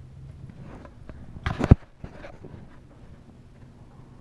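A short burst of knocking and rubbing about a second and a half in, ending in one sharp loud knock, then a few softer knocks: handling noise from the recording phone as it is moved.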